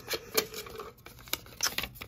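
Paper sticky-note slips rustling and clicking against a plastic cup as a hand rummages in it and pulls one out: a run of irregular crisp rustles and clicks.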